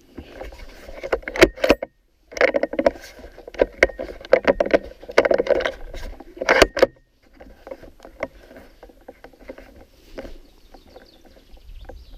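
Close rustling and knocking of handling noise right at the microphone, loud and irregular with many sharp clicks for about seven seconds, broken by a brief gap about two seconds in, then fainter and sparser.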